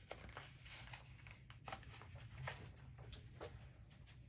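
Faint scattered clicks and light rustling of pens and a pen case being handled, over a low room hum.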